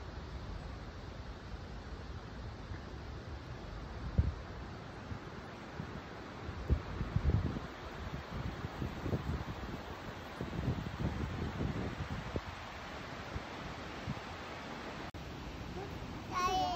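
Steady rush of water from the falls and creek, with gusts of wind buffeting the microphone in irregular low surges through the middle. There is a short click about fifteen seconds in.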